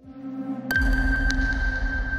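Electronic logo sting: a swell builds, then about 0.7 s in a sharp hit sets off a single high ringing tone that holds over a low rumble.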